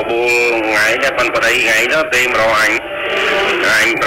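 A person's voice talking, with a short pause about three seconds in.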